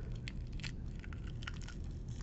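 Faint, scattered soft crackles of a fetal pig's skull cap being peeled away from the dura mater covering the brain.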